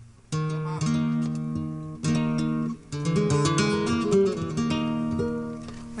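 Flamenco guitar played live: a few strummed chords ring out, then a quick run of single picked notes from about three seconds in.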